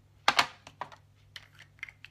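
A quick, irregular series of light clicks and taps from hands handling small objects, about eight in all, the loudest pair about a third of a second in.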